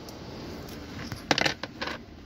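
Steady low background rumble, then a quick cluster of sharp clicks and rattles a little over a second in.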